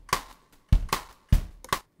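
A drum loop playing, with kick and snare hits coming about every half second.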